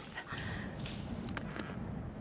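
Breathless human gasps and whimpering moans of someone being choked for pleasure, over a low rumbling background.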